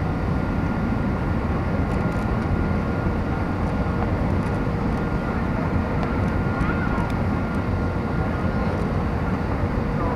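Steady cabin roar of an Airbus A320 in descent on approach, engine and airflow noise heard from inside the cabin at a window seat over the wing. Two faint steady whine tones sit above the roar.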